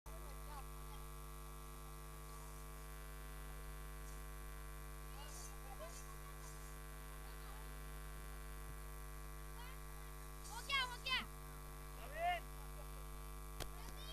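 Steady electrical mains hum, low and even. Near the end come a few brief high pitched calls and then a single sharp click.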